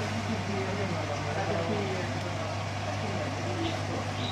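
Aquarium electromagnetic air pump humming steadily at a low pitch, with the air stone's stream of bubbles fizzing in the water.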